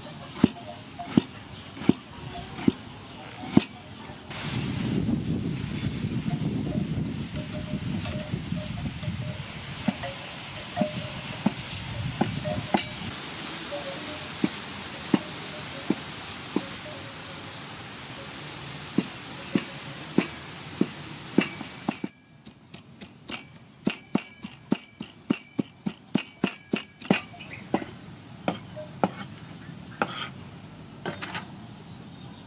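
Steel cleaver chopping tomato on a thick wooden chopping board: sharp knocks about once a second, then, after a sudden drop in the background noise about two-thirds of the way in, a quicker run of about three chops a second as the tomato is diced. A low rumbling background noise swells and fades in the first half.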